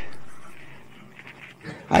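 A man's voice trailing off into a pause, its sound fading over about a second and a half, then speech starting again near the end.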